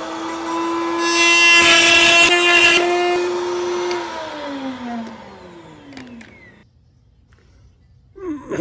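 An electric power tool's motor running at a steady high pitch and cutting into wood with a harsh rasp for about two seconds, then winding down and stopping about six and a half seconds in.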